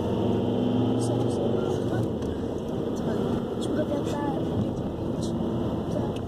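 Steady engine and road noise heard inside a moving car's cabin, with a song playing on the car stereo under it.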